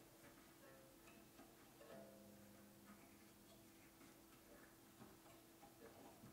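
Near silence: faint ticks and small handling sounds of twine being wound tightly around a wooden tuning peg on a lyre crossbar, over a faint steady hum, with a brief faint low note about two seconds in.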